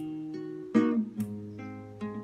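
Acoustic guitar, fitted with a capo, played as a short interlude: single plucked notes and chords about every half second, each left to ring into the next, the strongest near the middle.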